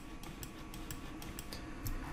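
A quick, irregular run of light clicks from a computer mouse and keyboard at the desk, several a second, heard faintly over room tone.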